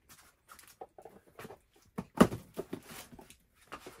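Small cardboard parcels and labels being handled: scattered light taps and rustles, with one sharp knock about two seconds in as a parcel is set down.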